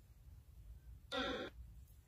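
A short voice-like cry lasting under half a second, about a second in, over faint background hiss.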